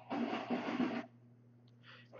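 A stack of Topps Finest chromium trading cards sliding against one another in the hands for about a second, a dry scraping rustle, as the last card is moved to the front of the stack.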